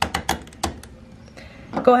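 Plastic drain filter cap of a Samsung washing machine being twisted clockwise by hand into its housing: a quick run of about five sharp plastic clicks in the first moment as it seats tight.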